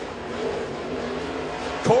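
Dirt late model race car's V8 engine running at speed through a qualifying lap, a steady even drone. The announcer's voice comes back in near the end.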